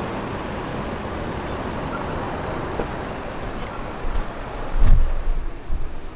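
City road traffic noise from the street below: a steady wash of sound, with a few short knocks and a louder low thump near the end.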